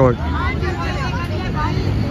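Faint distant voices calling out over a steady low rumble.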